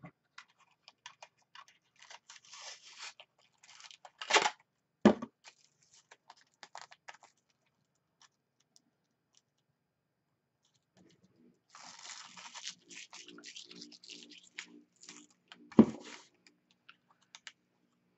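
Paper tabs being run through a small sticker maker and the sticker paper handled and torn: scattered clicks and paper rustling with a couple of sharp knocks, then, after a quiet spell, several seconds of crinkling and tearing and one more sharp knock near the end.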